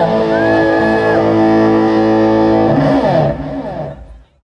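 Rock music: a sustained electric guitar chord ringing out, with a higher note sliding over it about half a second in. It fades away over the last second.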